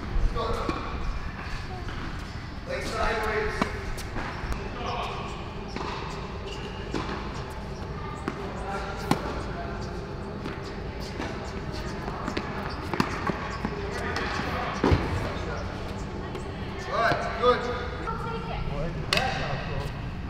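Tennis balls being struck by racquets and bouncing on indoor hard courts: scattered sharp hits and bounces throughout, echoing in the large hall, with players' voices in the background.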